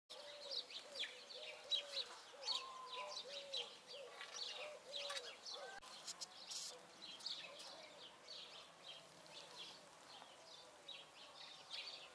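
Small songbirds chirping and twittering, fairly faint, many short calls in quick succession, with a lower repeated call underneath during the first half.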